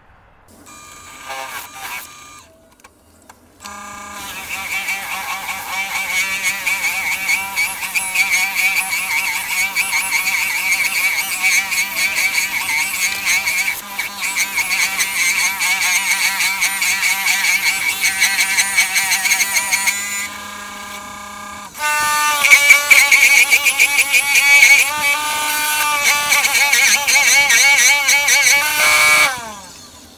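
Wood lathe running while a drill bit in the tailstock chuck is fed into the spinning sycamore blank. The bit gives a loud, pitched screech in two long passes, the second louder, and cuts off shortly before the end. The bit is struggling to cut: the turner thinks it is dull and the wood still wet.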